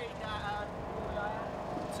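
A steady low engine hum, with quiet voices talking over it.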